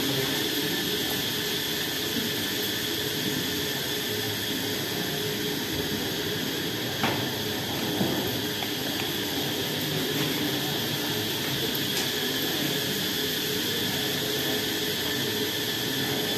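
Steady hiss and hum of room background noise, with a faint high whine running through it and a few short clicks around the middle.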